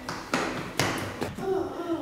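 Footsteps on a hard floor: a few light taps and thumps in the first second and a half, with faint voices near the end.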